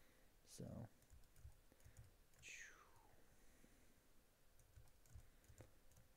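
Near silence with faint, scattered clicks from a computer mouse and keyboard.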